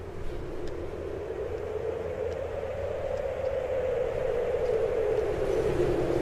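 Outro sound effect: a steady rushing drone that slowly falls in pitch and grows louder, with a low hum beneath.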